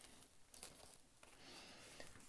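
Near silence with faint handling noise as a corrugated plastic sketching board is lifted and turned over, with a couple of soft clicks in the first second.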